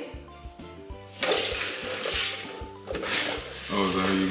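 Upside-down bowls on plates being slid and shuffled across a countertop: a scraping rush from about a second in until nearly three seconds, and again near the end. Background music with a steady beat plays throughout.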